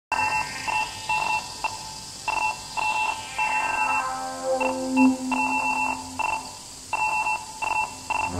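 Electronic music intro built on a stuttering pattern of short, high beeping tones. A lower held tone swells up in the middle.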